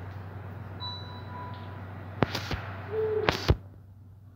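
Two sharp knocks in the second half, about a second apart, over a steady low hum. A faint thin tone sounds about a second in.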